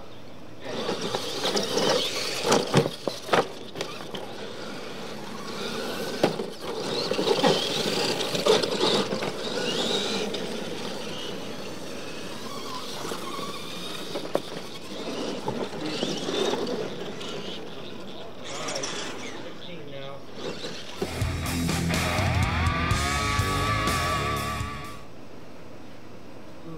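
Radio-controlled monster trucks racing on a dirt track, their motors running and chassis clattering over the ramps, with several sharp knocks from landings. Near the end, a few seconds of music with a heavy low beat.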